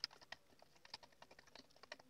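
Faint, irregular clicking and tapping of a flat wooden stick against the sides of a plastic measuring jug as fertilizer salts are stirred into water to dissolve them.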